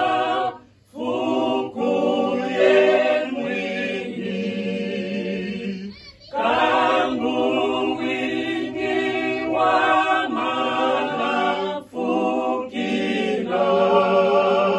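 A small mixed group of men and women singing together unaccompanied, in long held phrases with short breaks between them.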